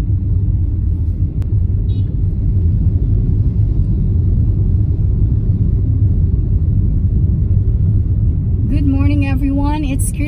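Steady low rumble of a car driving, engine and road noise heard from inside the cabin. A woman's voice begins near the end.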